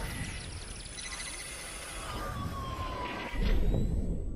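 Synthesized intro sound design for a radio sports show: sweeping, gliding electronic tones over a low rumble, with a slowly falling tone in the second half and a low swell near the end.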